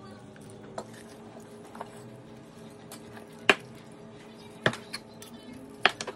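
Knife and fork carving a rotisserie chicken on a wooden cutting board: about six sharp knocks and clinks as the blade and fork tines strike the board, the loudest about three and a half seconds in.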